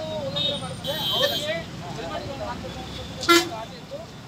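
Vehicle horns in street traffic under people talking close by: a held horn tone about a second in, then a short, loud toot near the three-second mark.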